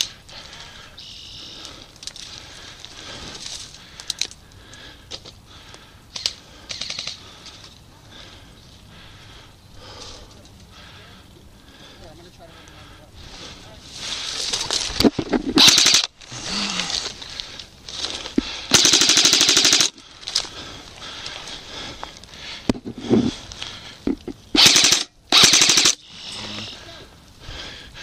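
Airsoft rifles firing rapid full-auto bursts. The first bursts come a little past halfway, the longest lasts about a second and a half, and more short bursts follow near the end.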